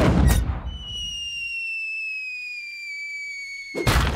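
Cartoon cannon firing: a loud boom, then a long whistle slowly falling in pitch as the cannonball drops, ending in a crash as it hits the ground near the end.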